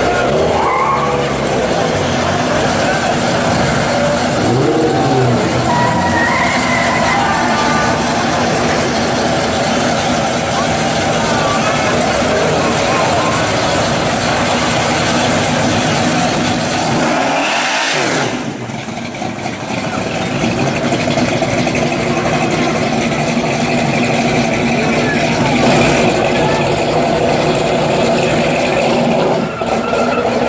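1969 Chevrolet Chevelle SS's engine running steadily at low speed as the car creeps forward, with a brief rise about two-thirds of the way through. Voices from the crowd can be heard over it early on.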